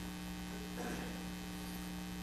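Steady low electrical mains hum with a faint hiss, in a pause between spoken phrases.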